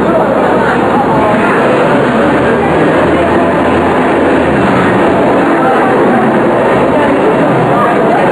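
Upright vacuum cleaner running steadily as a robot pushes it back and forth across a stage floor, with voices over it.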